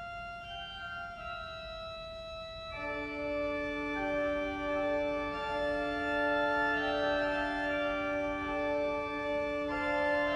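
Four-manual Willis pipe organ improvising in sustained chords; about three seconds in a low held note enters and the sound grows fuller and louder.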